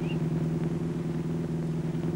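Motorcycle engine running at a steady speed, a constant low drone with no change in pitch.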